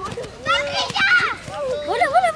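Several girls' voices shouting and calling out to one another during a running team game on a field, high-pitched and overlapping, with no clear words.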